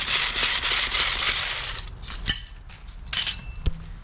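A brush spinner whirring with a fast rattle as it spins a latex paint brush inside a bucket, flinging rinse water off the bristles against the bucket wall to clear paint from them, stopping about two seconds in. A few clicks and knocks follow as the spinner is handled.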